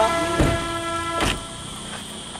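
A vehicle horn held in one steady, unbroken note that cuts off about a second and a half in, with two short knocks while it sounds.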